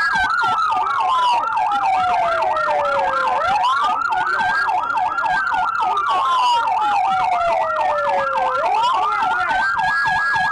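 Two police sirens sounding at once: one on a fast yelp, about three cycles a second, the other on a slow wail that climbs quickly, holds, then falls away over a few seconds, about every five seconds.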